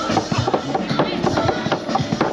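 A group of drummers playing, a dense run of quick drum strikes.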